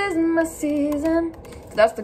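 A woman singing a short melody line: a few held notes, stepping down and back up, then a brief sung syllable near the end.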